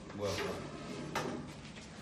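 A young man's voice asking a short question in a small room, then a single sharp knock about a second in.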